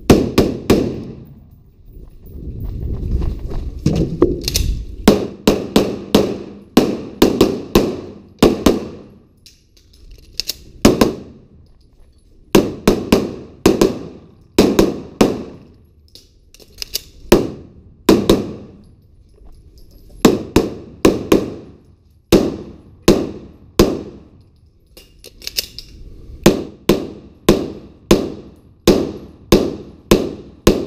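Dozens of gunshots fired in quick strings of two to four, with short pauses between strings: rifle fire from a scoped AR-style carbine at first, handgun fire later. Each shot echoes off the walls of the indoor range.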